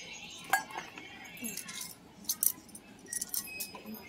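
Bangles on women's wrists clinking as their arms move: a few sharp chinks and jingles, the loudest about half a second in and two close together midway.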